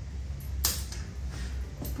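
A few light clicks and knocks of small objects being handled and picked up, over a low steady hum.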